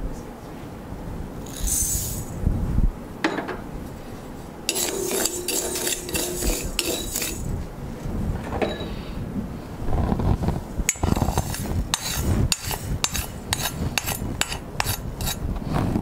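A metal spoon stirring and scraping dry grains in a small iron pan, with the grains rattling. Sharp clinks of spoon on pan come quickly through the second half.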